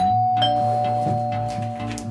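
Two-tone doorbell chime: a higher note, then a lower one about half a second later, both ringing on and slowly fading, over background music.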